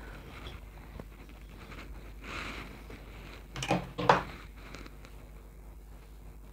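Faint rustling of fingers and a wide-tooth comb working through curled hair, with a soft swell of rustle about two seconds in. A brief wordless vocal sound comes twice around the four-second mark.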